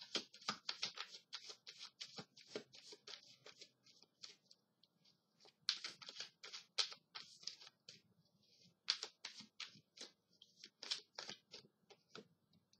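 A deck of tarot cards being shuffled by hand: faint, quick runs of card flicks and rustles, coming in several bursts with short pauses between.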